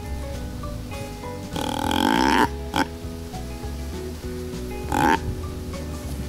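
Whitetail deer grunt call blown three times: a longer grunt about a second and a half in, then short grunts near three and five seconds. Background music plays underneath.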